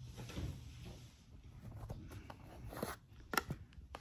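Hands handling a cardboard collector box and its plastic tray: faint rustling and scraping, with a few sharp clicks in the second half as fingers work the die-cast car out of the tray.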